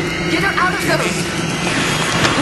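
Spoken drama dialogue over a steady low rumbling background.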